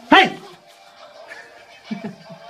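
A single short, loud yelp about a tenth of a second in, dropping quickly in pitch.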